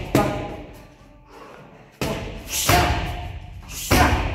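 Punches and kicks landing on a hanging heavy bag: four sharp thuds, the last, a low kick, the loudest.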